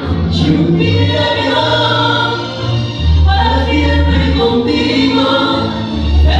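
A slow song with choir-style singing on long held notes over a bass line.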